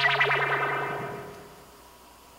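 A short edited-in musical sting with a warbling, echoing tone that fades out about a second and a half in.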